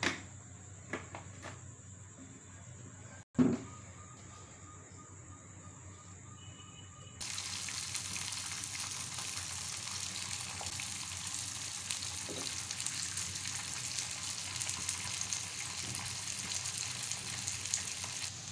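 Sliced onions frying in hot oil on an iron tawa: a steady sizzle that starts suddenly about seven seconds in and holds, as the onions cook toward light pink. Before it, a quieter stretch with a few faint clicks and one sharp knock a little after three seconds.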